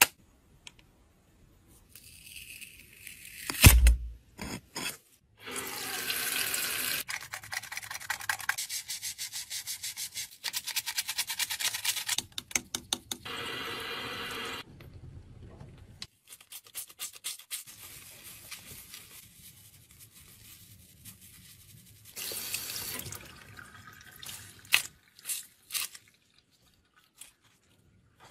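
A cosmetic sponge puff washed under a running tap: water runs over it while it is squeezed and rubbed, with runs of rapid, regular squelching squeezes. A single sharp knock about four seconds in is the loudest sound.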